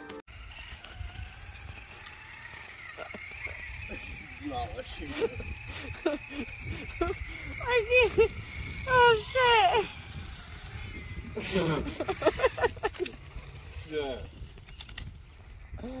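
Radio-controlled car's electric motor running with a steady whine as it tows a pet stroller over asphalt, over a low rumble; the whine fades out about eight seconds in.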